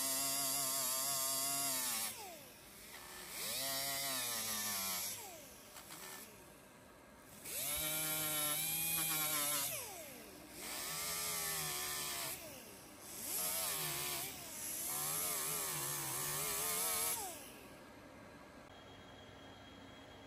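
Small right-angle grinder with an abrasive disc whining in about six bursts, its pitch dropping each time the disc bites into the painted steel rail and rising again as it eases off, grinding the paint back to bare metal.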